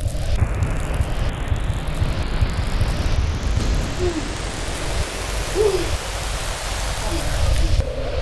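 Film sound effect for a supernatural power: a loud low rumble under a rushing hiss that climbs higher in pitch over several seconds, with two brief hoot-like calls near the middle.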